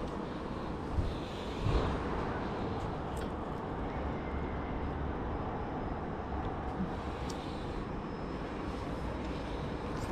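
Steady wind rumble buffeting a GoPro microphone high up on a steel tower-crane mast, with two dull knocks about one and two seconds in from climbing on the steel ladder.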